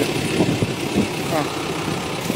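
Tractor engine running steadily as a tomato field is plowed under.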